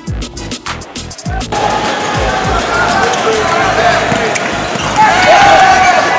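Electronic music with a beat of deep bass-drum hits. About one and a half seconds in, the live sound of a basketball game takes over: a loud gym din with a ball bouncing, short high sneaker squeaks on the hardwood and players' voices.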